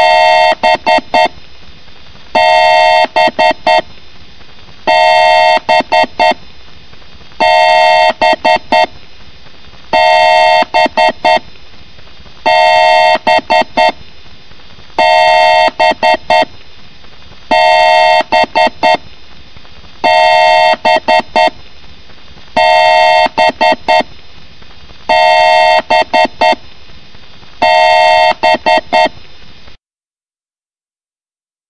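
A loud electronic honking beep sound effect looped over and over, about every two and a half seconds. Each repeat is a held two-note blare followed by a few short stuttering blips, and the loop cuts off suddenly near the end.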